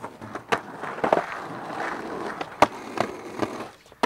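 Skateboard wheels rolling over concrete, broken by several sharp clacks from the board, the loudest a little past halfway.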